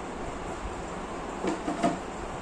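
Three quick knocks near the end as a thin drawer-bottom panel is fitted into a wooden drawer box, the last knock the loudest, over a steady background hiss.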